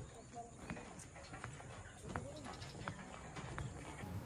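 Quiet outdoor background with light, evenly spaced footsteps, about one every three-quarters of a second, and faint distant voices.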